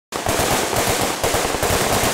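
Rapid automatic gunfire, a fast unbroken string of shots at roughly ten a second that starts abruptly.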